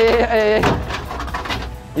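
A man's drawn-out shout, then a single crunching impact as a morning star strikes the slate-sheet lining of the box, trailing off in rattling debris.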